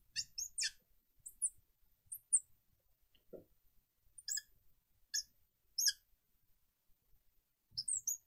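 Felt-tip marker squeaking on a glass lightboard as an equation is written: a string of short, high-pitched squeaks that come in small clusters, with a pause near the end.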